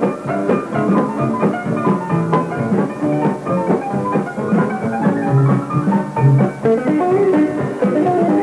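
Western swing band playing a fiddle-led old-time tune live, a quick run of fiddle and guitar notes over the band's rhythm, heard as a 1950s radio broadcast recording.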